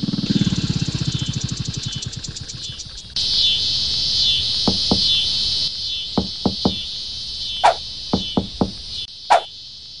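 Cartoon motorcycle engine chugging, its beat slowing before it cuts off about three seconds in. Then insects buzz steadily while hollow knocks on watermelons come in twos and threes.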